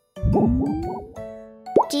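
Cartoon transition sound effect: a loud, low, wobbling sound about a quarter second in, with a tone gliding upward over about a second, then a quick upward swoop near the end, over light background music.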